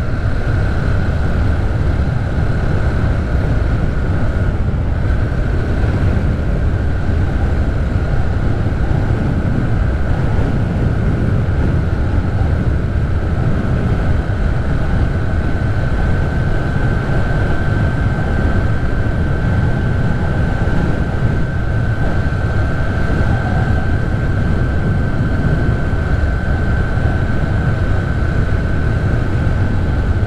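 Motorcycle cruising at a steady speed, heard from the bike itself: a constant low rumble of engine and wind with a thin steady whine running over it.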